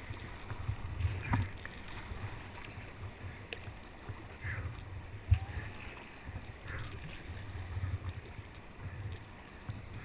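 Whitewater rushing and splashing around a kayak, heard from a deck-mounted camera with low rumbling buffets on the microphone and a sharp knock about five seconds in.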